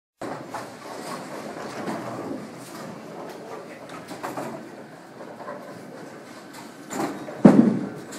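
Bowling alley din: a steady rumble of balls rolling down the lanes with scattered pin clatter. A loud crash near the end dies away over about half a second.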